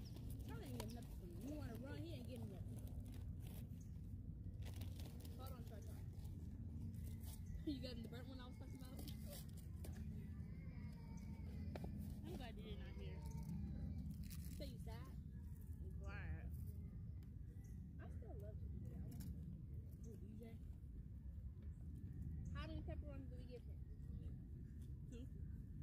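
Faint, indistinct voices of people chatting, mixed with repeated crinkling and clicking of snack packaging such as a chip bag, over a steady low rumble.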